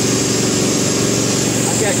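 Nitrogen gas blowing steadily through a plasma spray gun before the arc is lit: a loud, even rushing noise. Nitrogen blowing like this is the sign that the gas supply is working.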